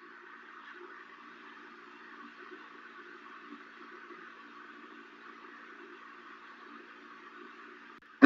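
Faint steady hiss with a low hum underneath: room tone and microphone noise, nothing else happening.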